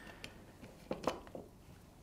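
A few faint, short clicks and taps from lab bottles and a large pipette being handled on a bench, over quiet room tone.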